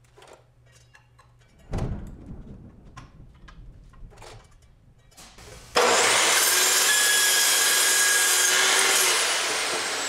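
Clicks and a thump of a clamp being set on the saw's fixture plate, then about six seconds in a DeWalt chop saw cuts through quarter-inch metal plate: a sudden loud, steady, high-pitched shriek for about three seconds, easing off near the end with a falling whine as the blade spins down.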